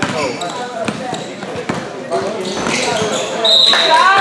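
A basketball being dribbled on an indoor gym floor, a run of short bounces, under the chatter of voices around the court. A brief high-pitched tone comes near the end.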